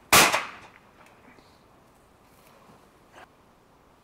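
A single shotgun shot just after the start, loud and sharp, its report dying away over about half a second.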